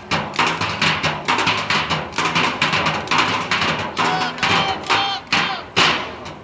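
Live percussion group beating a fast, steady rhythm on drums, about four hits a second, with a few short pitched calls over it about four to five seconds in.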